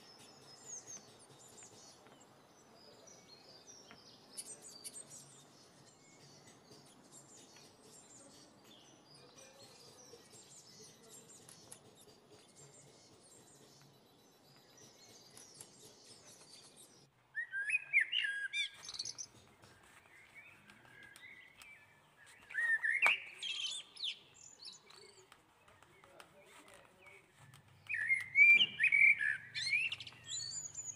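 Small birds chirping: faint, quick high twittering through the first half, then three louder bursts of chirps, each a second or two long, in the second half.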